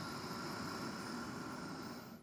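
A woman's deep inhale through the nose: a long, steady rush of breath.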